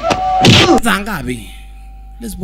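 A heavy film-fight blow landing about half a second in, followed by a man's voice crying out and falling in pitch; a faint steady tone of background music remains after it.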